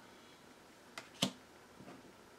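Tarot cards being handled on a stack: two short sharp clicks about a second in, a quarter second apart, the second louder, then a faint soft rustle near the end.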